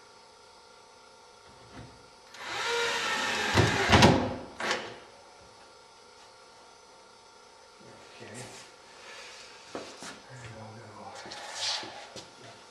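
Cordless drill driving a screw through a wooden batten strip into the wing frame, running for about two seconds and ending with a sharp knock. Softer wooden handling knocks follow later.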